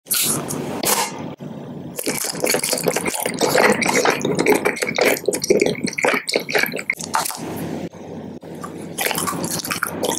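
Close-miked mouth sounds of biting into and chewing a round soccer-ball-patterned candy: dense wet squishing and smacking clicks. They let up briefly about two seconds in and again near eight seconds.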